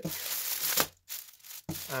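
Clear plastic packaging crinkling as hands handle and open it: about a second of rustling, a short pause, then a briefer crinkle.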